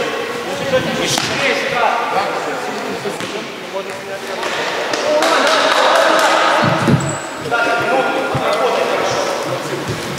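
Futsal ball being kicked and bouncing on a sports hall floor, with a few dull thuds about seven seconds in, under players' shouts that echo in the hall.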